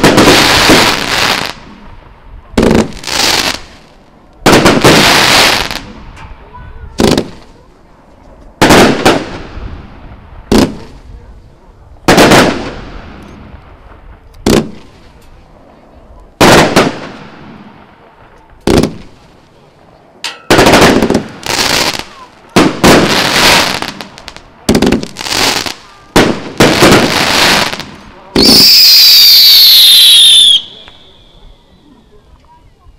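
Multi-shot consumer fireworks cake firing: about twenty sharp bangs, one every second or two at uneven spacing, each followed by a crackling fizz as the stars burn out. Near the end a loud volley of whistles glides down in pitch.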